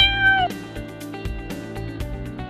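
A very young leopard cat kitten gives one long, high meow that ends about half a second in, followed by background music with a steady beat.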